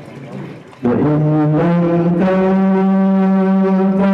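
A man's voice chanting Qur'an recitation (tilawah) into a handheld microphone. About a second in he enters on a long, steady held note that steps up in pitch a couple of times.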